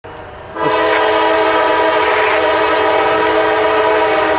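Diesel freight locomotive's air horn blowing one long, steady multi-note chord, starting about half a second in, as the train sounds for a grade crossing.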